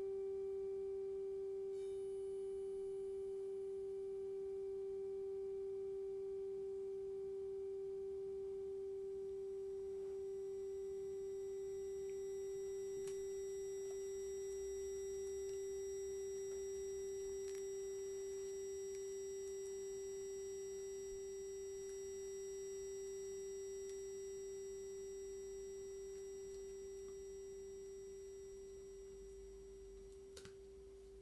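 A single steady pure tone held as a drone in an electro-acoustic improvisation, with faint, thin high whistling tones joining about a quarter of the way in and a couple of soft clicks; the drone fades a little near the end.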